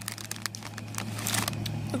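A plastic-foil potato chip bag crinkling as it is handled: a few sharp crackles, then a short burst of rustling a little over a second in.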